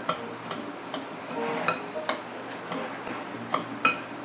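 A metal spoon clinks and scrapes against a mixing bowl while stirring moist Oreo crumbs with melted butter, about two or three clicks a second, some with a short ring from the bowl.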